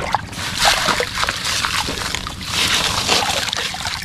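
A hand splashing and sloshing in shallow muddy water, with many small wet clicks and splatters as a mud-covered plastic toy truck is dug out and lifted from the water.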